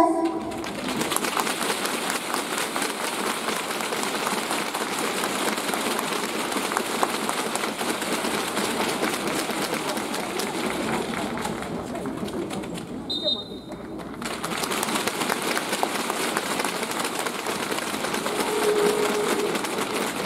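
Arena crowd clapping steadily, a dense even patter of many hands, with a brief lull about twelve seconds in.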